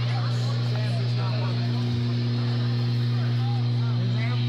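A steady low hum from the stage amplifiers between songs, one unchanging tone. Crowd voices talk and call out faintly underneath.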